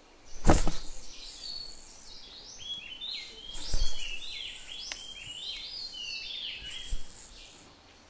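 A run of short high chirping notes, several overlapping, with a sharp hit about half a second in and a soft thump midway.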